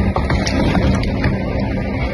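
Wind buffeting a phone microphone: a steady, uneven low rumble with hiss underneath.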